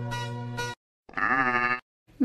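Background music with a low drone cuts off under a second in. After a short silence comes a single wavering sheep bleat, a little under a second long.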